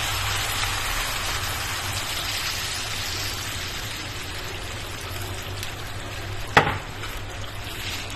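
Water poured from a glass into a hot frying pan of sautéed vegetables: a steady hiss that slowly fades. A single sharp click about six and a half seconds in.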